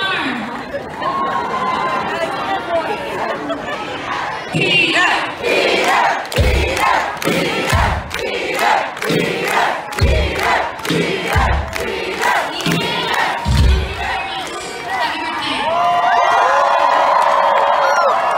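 Concert crowd cheering and shouting, with many sharp claps through the middle and a few heavy low thuds. Near the end the voices swell into a sustained cheer.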